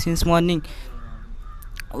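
A young man's voice reciting, breaking off about half a second in, followed by a quieter pause with a brief harsh rasp and a few faint clicks.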